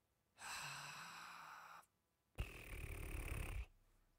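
A man breathes in deeply and then lets out a long sigh close to the microphone. These are two breaths of a little over a second each, and the second is louder, with a low rumble.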